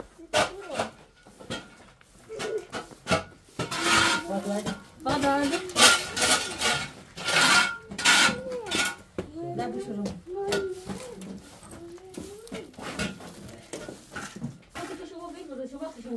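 Irregular knocking, scraping and clattering of household things, loudest between about four and eight seconds in, with a voice heard briefly now and then.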